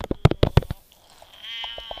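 A quick run of sharp clicks and pops, then a drawn-out, pitched voice-like sound that grows louder toward the end.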